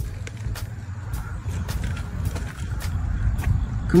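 Low, steady rumble of wind and handling noise on a phone microphone, with faint scattered clicks from a fishing reel being cranked as a fish is reeled in.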